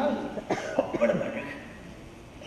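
A man coughs briefly into a microphone: a couple of short sharp bursts about half a second in.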